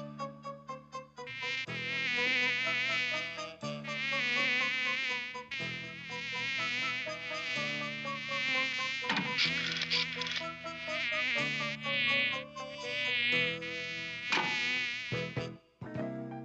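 Cartoon housefly buzzing sound effect: a high, warbling buzz that wavers in pitch, in long stretches with short breaks, over low held tones. It stops just before the end.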